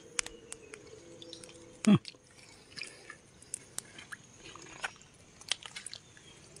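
Wet mud clicking and popping in scattered sharp ticks as a sea worm is dug out of its burrow with a thin rod. About two seconds in there is one brief, loud sound that slides downward in pitch.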